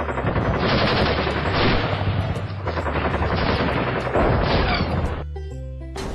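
Machine-gun fire sound effect: one long, rapid, continuous burst that swells in intensity several times and cuts off suddenly about five seconds in. Background music comes back in after it.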